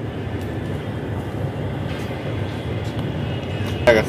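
Steady low rumbling background noise with no distinct events, with a voice breaking in right at the end.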